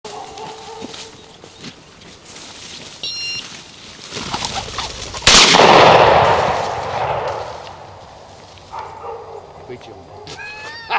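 A single shotgun shot about five seconds in, echoing for a second or two, fired at a flushed quail.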